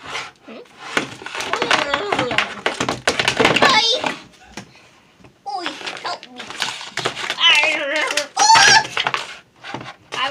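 A child's voice vocalizing in two long bursts with a short lull between, mixed with plastic toy figures knocking and clattering on a desk.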